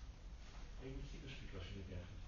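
Faint marker strokes on a whiteboard, with a brief low murmur of a man's voice about a second in.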